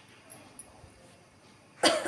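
A woman coughs once, sharply, near the end, after faint room noise.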